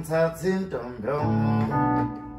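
Electronic keyboard playing held chords that change every half second or so.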